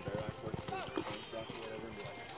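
Hoofbeats of a horse galloping on arena dirt during a barrel-racing run: a quick run of dull thuds through the first second and a half, with voices of onlookers behind.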